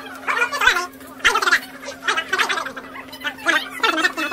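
People's voices talking in short bursts, over a steady low hum.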